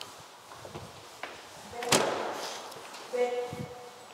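A single sharp thump about halfway through, followed a second later by a brief call in a person's voice.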